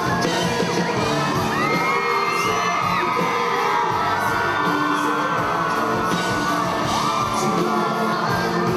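Live pop-rock band music with a female lead singer, and an audience cheering and screaming over it.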